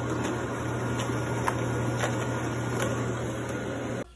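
A machine running steadily: a constant low hum under an even rushing noise, with a few light clicks. It cuts off abruptly at the end.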